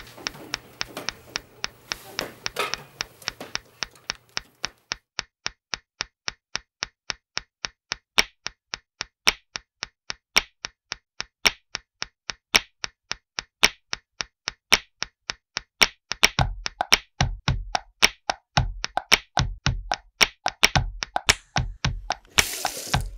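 Object percussion: a pencil tapping on a wooden desk in a steady beat of sharp taps, about four a second. From about a third of the way in, a louder accent falls about once a second, and deep thumps join in the last quarter.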